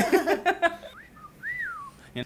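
Laughter and voices, then a short whistle: a brief rising note, followed by a longer note that rises and then glides back down.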